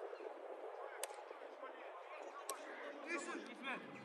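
A football kicked twice during a passing and shooting drill: two sharp thuds about a second and a half apart, echoing slightly, with players' voices calling faintly in the background.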